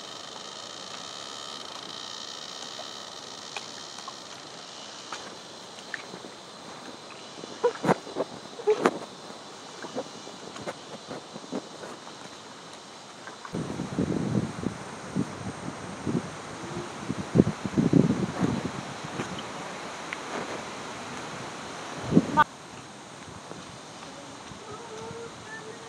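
Footsteps on a leaf-strewn dirt path, irregular rustles and soft thuds, with a louder stretch from about the middle that starts and stops abruptly. A steady high-pitched buzz is heard in the first few seconds.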